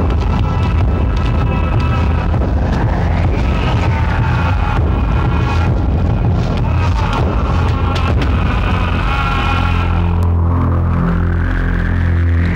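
Dramatic film background score with a heavy, steady low drone and layered sustained tones, swelling upward in pitch about three seconds in and again near the end.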